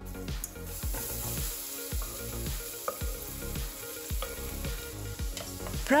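Chopped onion, garlic and grated carrot sizzling steadily as they fry in hot olive oil in a stainless steel pot, stirred with a wooden spoon.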